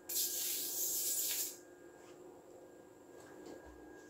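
Small kacher-type Tesla coil discharging into a screwdriver tip held near its tin-can top: sparks give a steady high hiss that cuts off about a second and a half in. A faint steady high tone stays afterwards.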